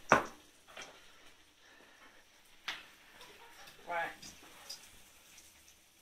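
Kitchen knocks and clicks: a sharp knock at the very start, then lighter clicks about a second in and near three seconds, from a sauce bottle and utensils handled against the counter and frying pan.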